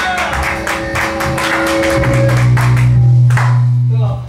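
Live rock band of electric guitars, bass guitar and drums playing loudly, with rapid drum hits in the first half; from about halfway a low bass note is held and rings on, as at the close of a song.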